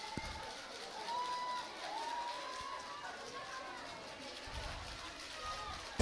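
Faint shouting voices from players on the pitch celebrating a goal, a few drawn-out calls over a low background hum.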